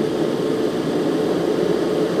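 Propane ribbon-burner forge burning evenly with its door open: a steady rushing noise of flame and forced air.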